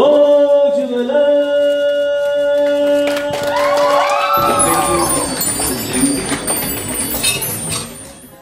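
A man sings a long held note unaccompanied into a microphone. As the note ends, a bit over four seconds in, an audience breaks into applause and cheering, which fades near the end.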